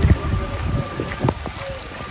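Heavy rain hissing down, with wind rumbling on the microphone; the rumble is strongest in the first moment and eases off toward the end.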